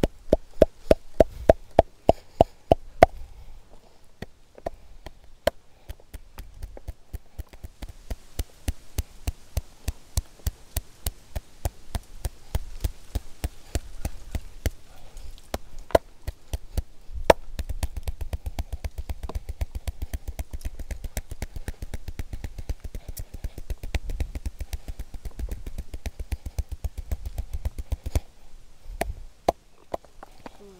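Hands striking bare skin in a fast, even rhythm of percussive massage strokes on the back and shoulders, several slaps a second. They are loudest in the first three seconds and stop about two seconds before the end.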